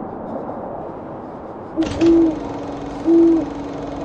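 An owl hooting twice. About two seconds in comes a short note running into a longer held one, and about three seconds in another held note, with a steady low drone starting just before the first hoot.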